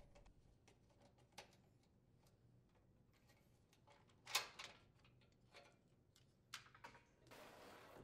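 Quiet handling sounds of a washer lid lock being removed: a few faint clicks, then about four seconds in a short plastic clatter as the lid lock assembly is pulled free of the washer's sheet-metal main top, followed by a few light ticks and a soft scrape near the end.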